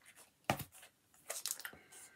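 A bagged comic book being picked up and handled, its plastic sleeve crinkling in short bursts: once about half a second in, then a cluster of rustles in the second half.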